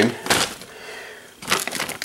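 Plastic bag of frozen vegetables crinkling and crackling as it is picked up and handled, with a few sharp crackles near the end, over a faint hiss of chicken breasts simmering in water in a frying pan.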